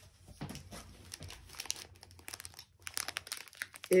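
Plastic wrapping on a packaged fabric bundle crinkling as it is picked up and handled, in irregular crackles that get busier in the second half.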